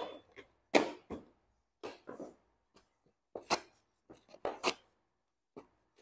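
Disposable gloves being pulled off and on: a string of short, sharp snaps and rustles, about eight at irregular intervals with quiet between.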